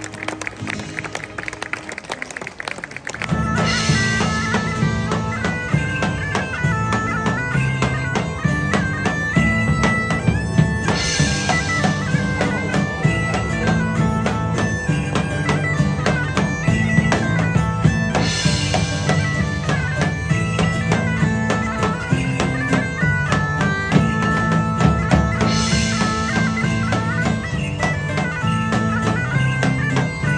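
Bagpipes play a stepping tune over a steady low drone, with drum accompaniment, starting suddenly about three seconds in. Before that, for the first few seconds, acoustic guitar is heard more quietly.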